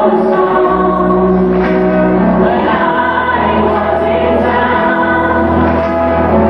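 Live band performance: sung vocals with layered, choir-like backing voices over guitar and keyboards, with long held notes and a bass line that changes note every couple of seconds.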